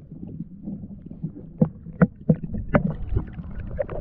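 Muffled underwater rumble on a GoPro Hero 7's microphone as the camera is hauled up through the water. From about a second and a half in come a series of sharp knocks as it bumps against the stone wall.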